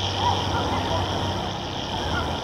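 Experimental electroacoustic soundscape: a dense, steady wash of noise over a low hum, with a few faint, brief warbling fragments.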